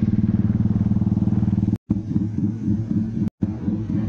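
Royal Enfield motorcycle engine running at cruising speed on the road, a fast, even, low pulsing exhaust beat. It cuts out abruptly twice, briefly, at edit cuts about two and three seconds in.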